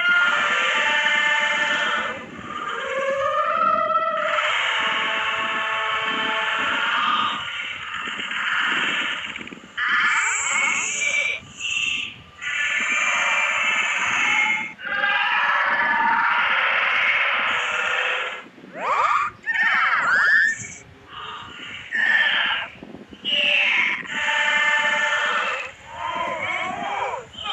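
Distorted, effects-processed audio of animated studio logo jingles: dense pitched, chirpy sound with gliding pitches. It runs fairly continuously at first, then cuts in and out in short choppy pieces from about ten seconds in.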